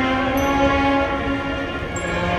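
Procession band's brass holding a long sustained chord in a slow funeral march. A strong low note dominates for about the first second and a half.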